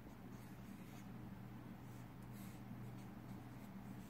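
Marker pen drawing on paper: faint, scattered scratchy strokes over a steady low hum.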